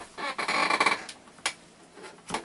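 Rustling movement as a person turns in an office chair toward the desk, then two sharp clicks of a computer mouse about half a second apart.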